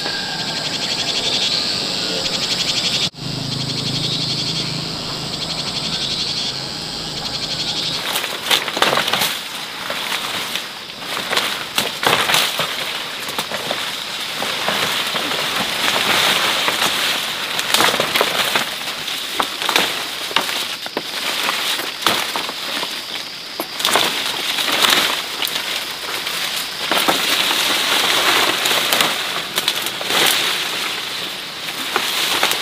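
Forest ambience with faint high chirping. From about eight seconds in, dense irregular rustling and crackling of dry grass and foliage over a steady high insect drone.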